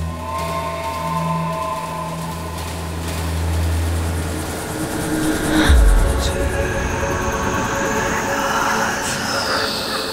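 A low, sustained musical drone fades out about halfway, then a deep boom hits. After it comes the steady rumble of a railway carriage running on the rails, with a thin high whine above it and a falling tone near the end.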